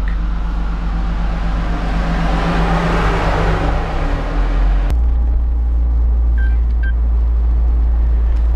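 Roadster driving with its top open: a steady engine hum under wind and road noise that swells for a couple of seconds. About five seconds in the sound cuts suddenly to a duller, steadier low driving drone.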